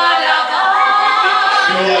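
Two women singing a duet without instrumental accompaniment, into a microphone.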